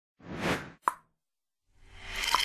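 Intro animation sound effects: a short swell of rushing noise that fades, then a single sharp pop just under a second in, followed by a pause and a sound beginning to rise near the end.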